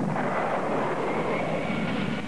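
A rushing whoosh sound effect, like a jet going by, with a faint high whistle running through it: a speed effect for someone dashing off.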